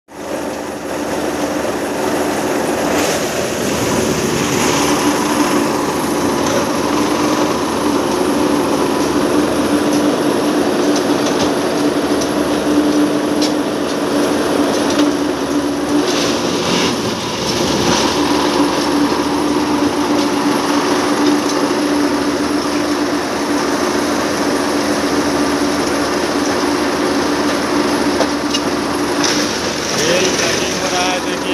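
Plasser ballast tamping machine running: a steady engine-and-hydraulic drone with a strong even hum, with short bursts of louder clattering noise about 3 seconds in and again around 16 seconds as its tamping and lifting units work at the rails.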